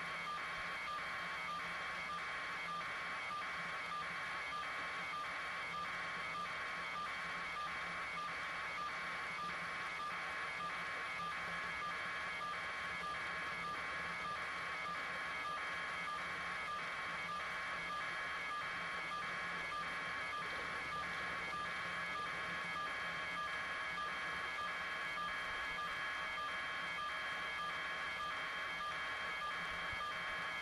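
Steady electronic pulsing, about three pulses every two seconds, over a constant high whine and a low hum.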